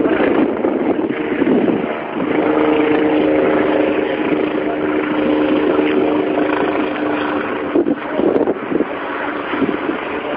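Helicopter overhead: a loud, steady engine and rotor drone with a held hum that fades out about seven and a half seconds in.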